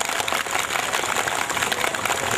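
Audience applauding: a dense, even patter of many hands clapping at once.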